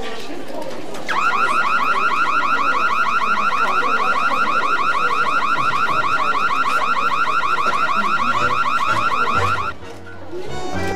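Electronic alarm sounding a loud, rapid warble of repeated rising sweeps. It starts about a second in and cuts off suddenly just before the end.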